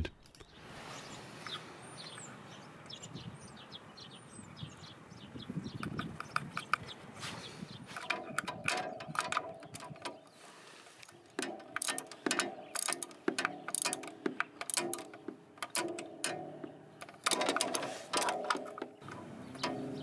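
Socket wrench ratchet clicking in quick bursts as a 12 mm socket runs the oil fill bolt back into a scooter's final drive case, snugging it before torquing. The clicking starts about eight seconds in and comes in three runs.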